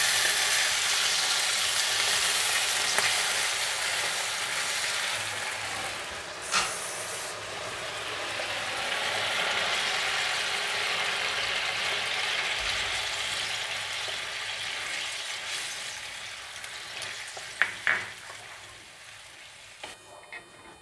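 Fried masala paste and potatoes in a hot non-stick pan sizzling hard as water is poured in, the hiss slowly dying away as the gravy settles to a simmer. A few short knocks along the way, one about six seconds in and two near the end.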